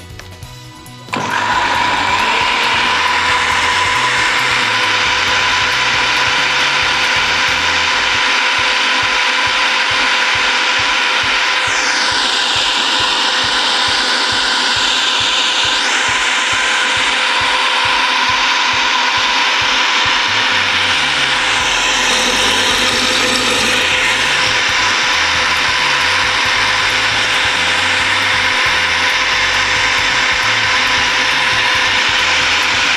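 Countertop blender switched on about a second in and running at high speed, puréeing soft-cooked garlic cloves in olive oil. Its steady whine sweeps in pitch briefly twice.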